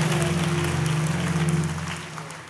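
Congregation applauding over a held low instrumental chord; both fade away near the end.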